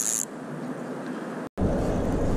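Spinning reel cranked to bring in a fish: a high whirring that stops about a quarter second in, leaving a quieter hiss. The sound cuts out briefly at about one and a half seconds and comes back as a louder low rumble.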